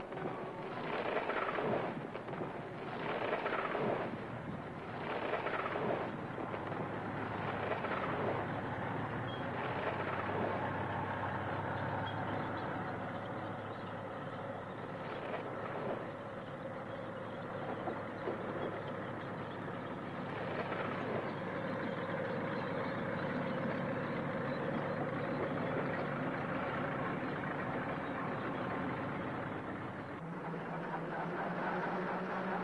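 Tractor engines running with a steady drone while clearing land. In the first few seconds there are several rough crashing noises about a second apart.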